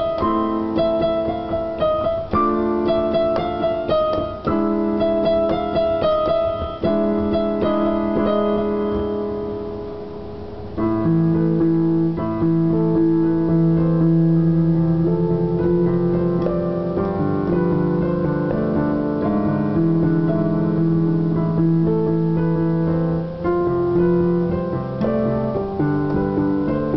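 Electronic keyboard played by hand in chords. A chord pattern is struck again about every two seconds and fades out around ten seconds in. Then lower chords are held and changed every couple of seconds.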